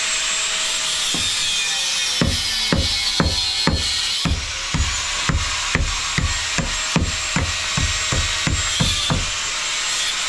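A hand pick-hammer chipping at a mud-plaster wall: a run of about eighteen quick, sharp strokes, two to three a second, starting about two seconds in and stopping near the end. A steady hiss runs underneath.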